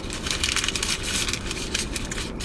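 Foil and paper burrito wrapper crinkling and crackling as it is handled.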